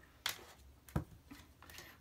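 Tarot cards being drawn from a deck and laid on a table: two short soft clicks, about a quarter second and a second in, then a faint sliding rustle as a card is set down.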